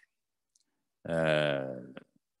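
About a second of dead silence, then a man's drawn-out hesitation vowel, a held "aah" that falls slightly in pitch, ending in a short click.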